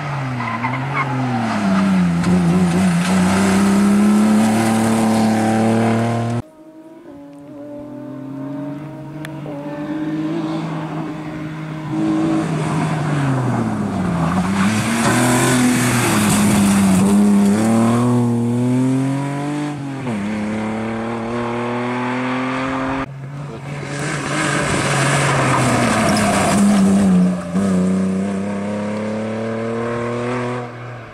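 BMW E36 engine revving hard, its pitch falling and climbing again and again as the car is flung around tight turns, with tyres squealing through the hardest stretches. The sound breaks off suddenly twice, about six and twenty-three seconds in.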